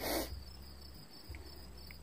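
Crickets chirping steadily and faintly in the background over a low hum, with a short noisy rustle right at the start.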